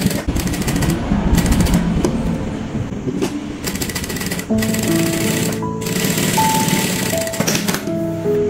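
JUKI industrial sewing machine running fast, a dense rapid stitching clatter, over background music; the music tones stand out more in the second half.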